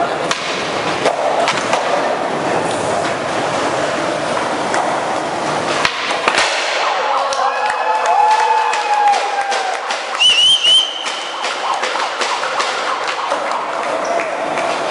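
Skateboard rolling on a tiled floor with sharp board clacks amid crowd noise, then about six seconds in a group of onlookers cheering and yelling, with a sharp high whistle about ten seconds in.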